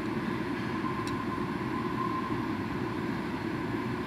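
Steady low background rumble of running machinery, with a faint steady whine above it and one faint tick about a second in.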